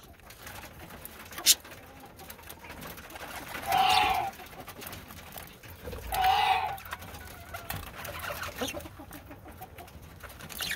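Two loud bird calls, each about half a second long, about two and a half seconds apart, over faint chirping and rustling from a flock of budgerigars feeding. There is a single sharp click about a second and a half in.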